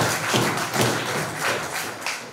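A few people clapping their hands in slow, scattered claps, about two or three a second, growing fainter towards the end.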